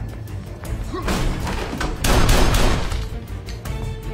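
Action film score with a steady driving beat. About a second in, a loud burst of noise swells over it, peaks just past the middle, then falls back.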